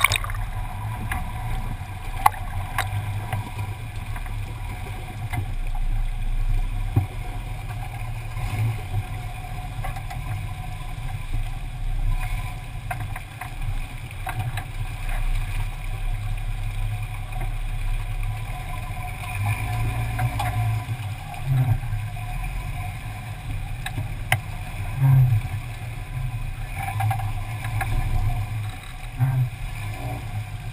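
Creek water rushing and splashing around a camera mounted low on the side of a Jeep Scrambler as it crawls through the creek, over a steady low rumble from the Jeep. Now and then there is a louder knock, a few of them in the second half.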